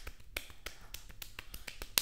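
A run of small, sharp clicks at irregular spacing, several a second, with a sharper click near the end.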